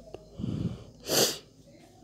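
A person's breathy non-speech noise: a soft low breath about half a second in, then one short, sharp hissing burst of air just after a second in, like a sneeze or forceful exhale.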